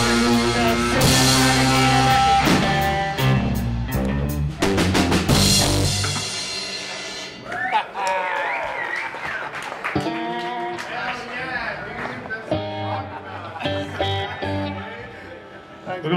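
Live band with electric guitars, bass and drums playing loudly. About six seconds in, the drums and bass stop as the song ends, leaving quieter electric guitar chords and notes ringing and sliding.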